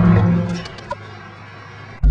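A deep roar, loud at first and dying away within about a second, leaving a faint low hum.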